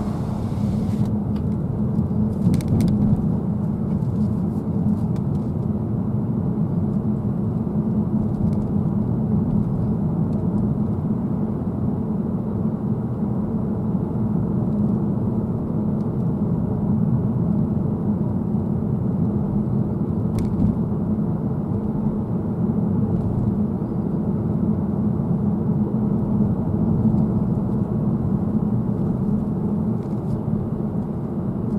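Steady road and engine noise heard inside the cabin of a moving car, a low hum with tyre rumble, broken by a few faint clicks.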